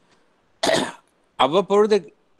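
A single short cough about half a second in, after which a voice starts speaking again.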